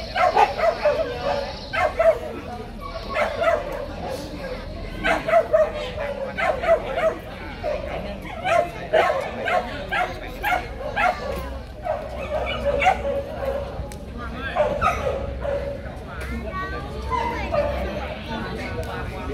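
Dogs barking and yipping in short repeated calls, with brief pauses between them.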